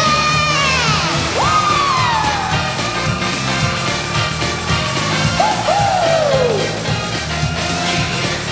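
Live pop song with a steady beat and a female voice holding long notes that swoop up and then slide slowly down, several times.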